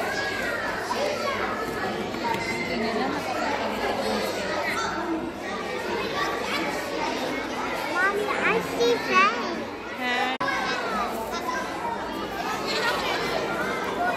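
A roomful of young children chattering at once, many small voices overlapping, with a few louder high-pitched squeals about eight to nine seconds in.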